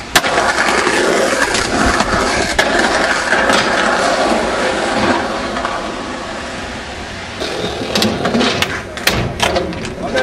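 Skateboard wheels rolling on pavement, a steady rough noise that eases off after about six seconds, followed by a run of sharp clacks of the board.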